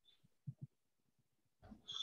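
Near silence on the call line, broken by two faint short sounds about half a second in and a brief faint sound with a thin high tone near the end.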